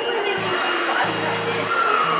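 Background music over the steady rumble and hiss of an Osaka Metro subway train moving along an underground platform, with a thin steady high tone running through it.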